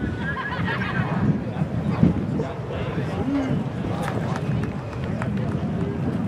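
Spectators chattering, with the quick footsteps of a high jumper's run-up on the rubber track. There is one louder thump about two seconds in.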